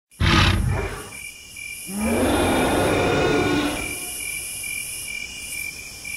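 Dubbed monster-style dinosaur roar sound effect: a short loud roar, then a longer one about two seconds in that begins with a rising pitch and then fades. A steady high-pitched chirring runs underneath.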